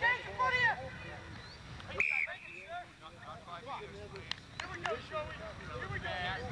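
Indistinct voices of rugby players and onlookers calling out across an open field, with no clear words.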